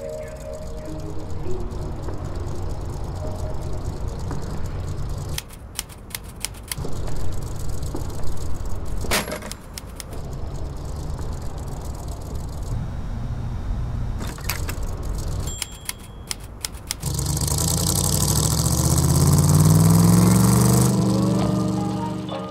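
A car engine runs with a steady low rumble, with a run of sharp clicks and knocks partway through. Near the end the engine revs up, its pitch climbing steadily for about four seconds.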